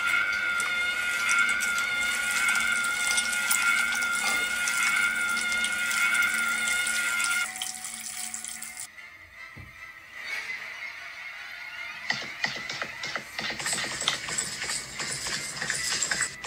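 Horror soundtrack music. Two steady high tones are held and then break off about seven and a half seconds in, followed by a quieter stretch and then a dense crackling texture from about twelve seconds.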